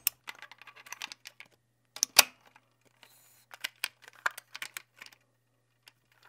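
A film camera's mechanism being worked by hand: a run of small sharp clicks and ratchet ticks from its knurled dial and film-loading parts. Two louder snaps come about two seconds in, a short hiss follows about a second later, and a cluster of quicker clicks comes after that.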